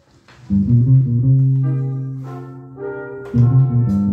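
A northern soul record starting on a vinyl turntable about half a second in: an intro of bass and guitar with long held low notes, then a new phrase near the end.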